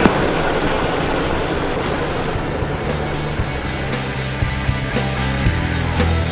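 Background music with a steady beat; a low bass line comes in about three seconds in.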